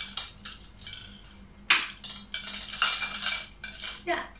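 A string of small plastic pumpkin lights clinking and rattling as it is handled, with one sharp click a little under two seconds in and a busier rattle after it.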